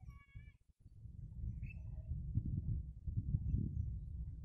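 A brief animal call, held on one pitch for about half a second, right at the start, then a low rumbling noise through the rest.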